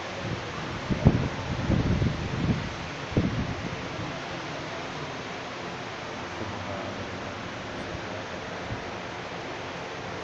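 Handling noise from a handheld camera being swung around: a few loud, rough rumbling bursts between about one and three and a half seconds in. Under it runs a steady hiss of room noise.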